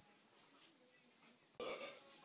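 Near silence, then a voice starts faintly near the end.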